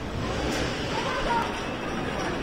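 Roller coaster loading-station background: a steady noise with faint voices and a single sharp click about half a second in.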